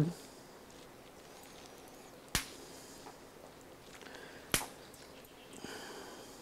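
Two short, sharp snaps about two seconds apart: wet, partly rotted sticks broken by hand.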